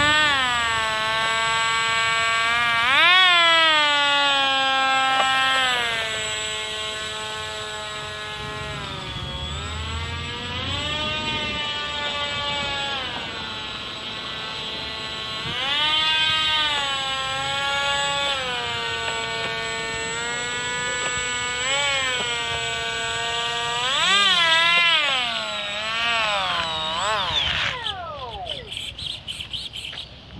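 Electric ducted-fan motor of a radio-control F-16 model jet whining, its pitch rising and falling repeatedly with the throttle as the model taxis, then spinning down and stopping a couple of seconds before the end.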